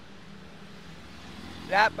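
Steady low rumble of distant street traffic, then a man starts speaking in Thai near the end.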